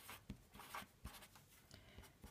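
Felt-tip pen writing figures on paper: several short, faint strokes of the tip across the page.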